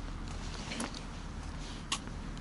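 Footsteps on a wet paved path: a faint step about a second in and a sharper one near the end, over a steady low outdoor rumble.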